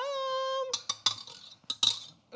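A woman's voice glides up into a held high note for under a second. Then a stand mixer's wire whisk knocks and scrapes against its stainless steel mixing bowl in a few sharp metallic clinks.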